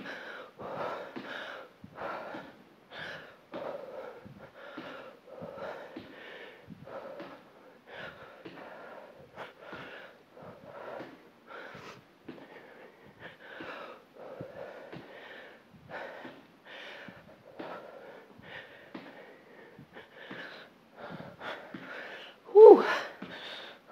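A woman breathing hard through a set of squat jumps, short forceful breaths coming about once or twice a second, with light thuds among them.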